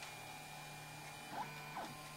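MendelMax 3D printer's stepper motors running as the print head moves: a faint steady hum with two brief whines a little after halfway.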